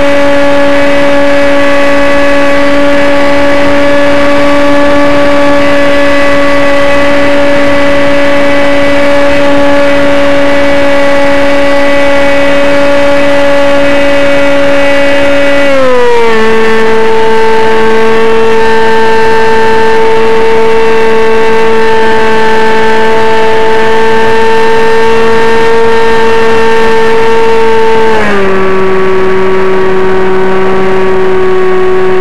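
A radio-controlled model airplane's motor and propeller, heard close up from a camera on board the flying plane. It runs with a loud, steady whine whose pitch steps down twice, once about halfway through and again near the end.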